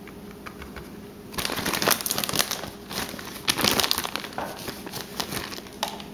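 Plastic bag of shredded cheese crinkling in irregular bursts as a hand reaches in and pulls out a handful. It starts about a second and a half in.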